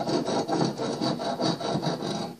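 Claw hammer tapping rapidly along the rough edge of a brick paver in a quick, even series of light taps, knocking the edge smooth.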